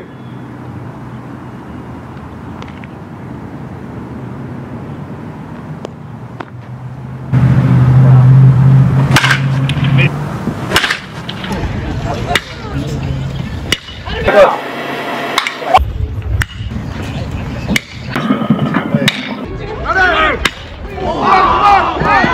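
Steady outdoor background noise, then much louder game audio from about seven seconds in: a low rumble, several sharp cracks, and voices shouting near the end.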